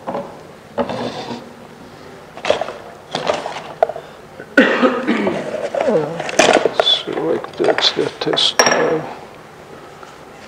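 Small hand tools clinking and clattering against each other as they are rummaged through in a cardboard box, with several sharp clicks in the busiest stretch about halfway through.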